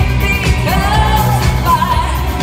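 Live electronic pop music: a woman sings long held notes that glide up into pitch, over synthesizer keyboards and a steady low bass.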